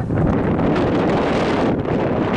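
A gust of wind buffeting the camera microphone: a loud, rushing rumble with no pitch, its hiss thinning near the end.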